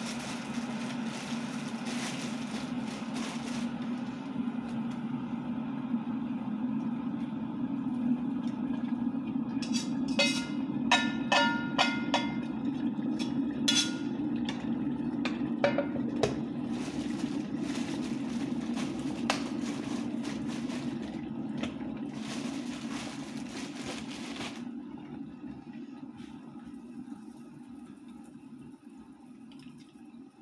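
Kitchen pots and metal utensils clinking, a quick run of ringing clinks about a third of the way in, over a steady low appliance hum. A hiss cuts off suddenly a little past the three-quarter mark, and the hum then fades.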